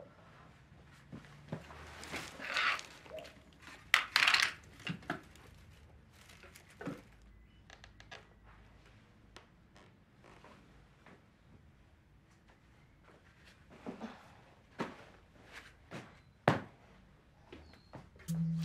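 Rummaging through household things. A vase of dried twigs is tipped out onto a rug, with rustling and clattering loudest about two and four seconds in, followed by scattered knocks and thuds as objects are moved about.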